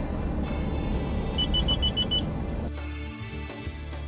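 An in-vehicle collision warning unit beeping rapidly, about six short high beeps in under a second, over a loud rushing noise that stops about two and a half seconds in. The beeps warn the driver of a risk of collision at an intersection.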